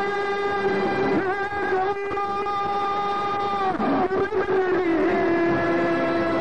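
A man singing Kurdish maqam, holding long sustained notes and breaking them with short ornamented bends before settling on the next note, with violins and frame drum behind.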